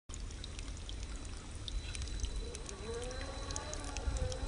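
Electric RC rock crawler's brushed motor and drivetrain whining at a wavering pitch as it crawls over rock, starting about halfway in, over a trickling-water hiss with small ticks from the tyres on stone and dry leaves.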